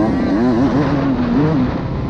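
Dirt bike engine heard from the rider's helmet camera, revving up and down as the bike rides the motocross track, its pitch climbing at first and then rising and falling with the throttle.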